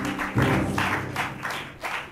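Live transition music from a keyboard: held notes, then rhythmic chords struck about three times a second, the strongest coming about half a second in.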